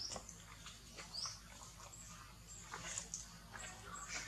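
Faint, short high-pitched chirps, a couple of them quick rising squeaks, over light crackling and scratching as the dry, fibrous coconut husk is handled.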